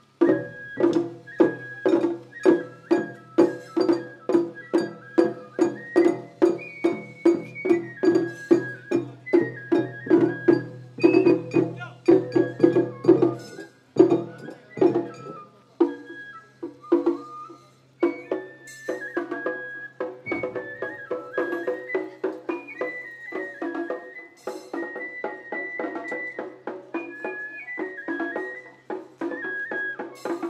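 Matsuri-bayashi festival music played live: taiko drums keep a steady beat of about two strokes a second, with a high bamboo-flute (shinobue) melody over it. About halfway through, the drumming becomes lighter and sparser while the flute carries on.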